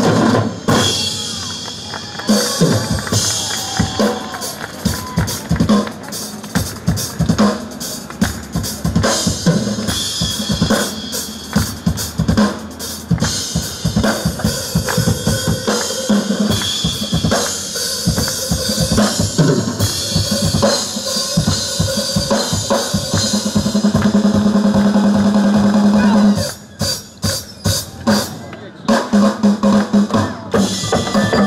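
Live percussion ensemble playing a fast, dense rhythm on a drum kit and clear acrylic drums struck with sticks, with Korean barrel drums. It thins out to a sparser, quieter stretch near the end.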